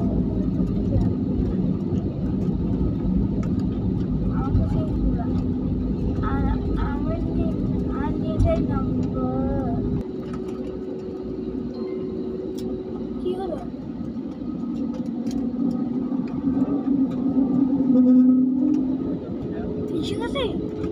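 Jet airliner cabin noise heard from a window seat: a steady deep engine drone with a droning hum, and people talking faintly in the cabin. About halfway through the deep rumble drops away abruptly, and a hum then swells to its loudest near the end.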